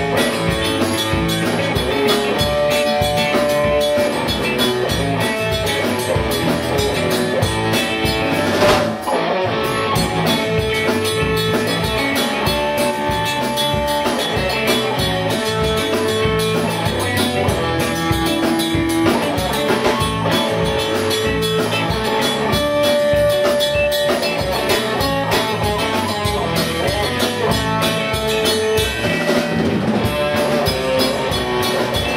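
Live rock band playing an instrumental on electric guitars and drum kit, a lead guitar holding long melody notes over a steady beat, with a sharp accent about nine seconds in.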